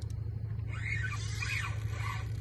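A steady low motor hum.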